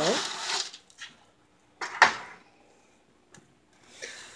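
Loaf of bread dough on parchment being slid off a peel onto a metal cookie sheet in an oven: a brief rustling scrape of paper, then a single sharp knock on the metal about two seconds in.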